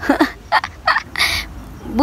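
A woman laughing in a few short, breathy bursts.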